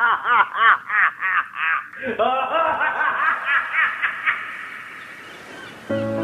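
High-pitched laughter: a quick run of rising-and-falling 'ha' syllables, about four a second, then a second burst about two seconds in that trails off and fades out before the end.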